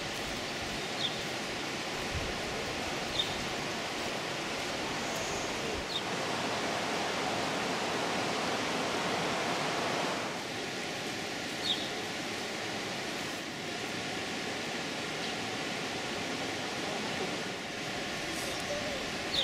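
Steady rushing of the Alcantara river's water through the basalt gorge, swelling slightly in the middle, with a few short high chirps scattered over it.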